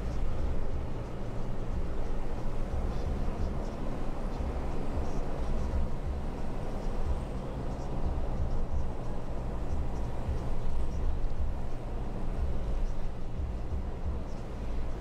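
Steady low rumble of road and engine noise heard from inside a moving car.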